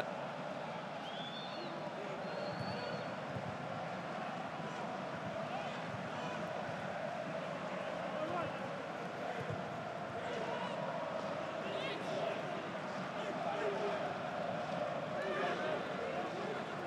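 Pitch-side sound of a football match in an empty stadium: distant players' shouts and calls over a steady hum, with no crowd noise.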